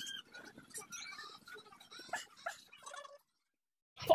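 Faint short squeaks and light knocks from a rubber exercise ball shifting under a body on a tiled floor, cutting off into silence near the end.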